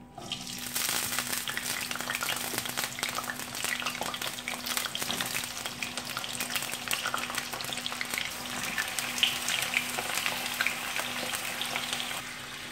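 Raw potato slices sizzling and crackling in hot oil as they are dropped into the pan, the sizzle starting about half a second in and going on steadily with dense crackle.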